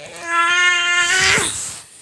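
A child's voice holding one long, steady, high note for about a second, the pitch dropping sharply as it ends.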